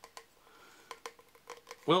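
A few faint scattered clicks and taps from hands handling a folding game box while trying to get the pieces out.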